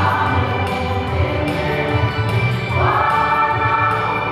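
A women's choir singing together, holding long notes, with a new note starting about three seconds in.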